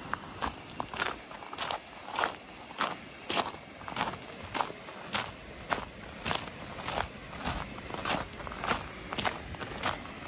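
Footsteps crunching on gravel at a steady walking pace, about one step every half second or so. Insects keep up a steady high-pitched buzz behind them, starting about half a second in.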